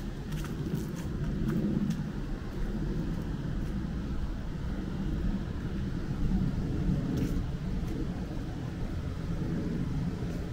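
A steady low rumble of outdoor background noise, with a few faint light ticks over it.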